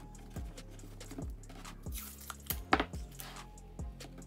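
Blue painter's tape being handled: scattered taps and clicks with short rasping rips as tape is pulled from the roll and pressed onto a sneaker's sole, and one sharper knock a little past halfway. Background music with a steady low bass runs underneath.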